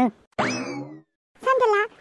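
Comic cartoon sound effect: a short pitched tone that slides down in pitch, lasting about half a second and starting just under half a second in. A voice speaks briefly near the end.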